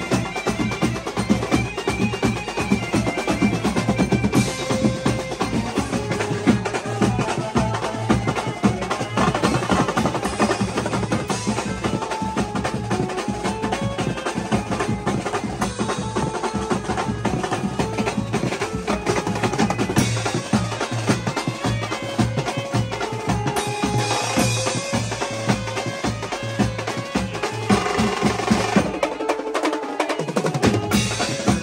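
Live band music: fast, dense drumming on a rack of drums and cymbals, with a melody line running over the rhythm.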